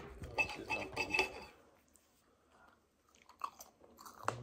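Knife and fork cutting a sausage on a ceramic plate, metal scraping and clinking against the plate, mostly in the first second and a half, with a few faint clicks near the end.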